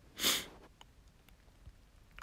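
A person's short sniff close to the microphone, then near quiet with a couple of faint ticks.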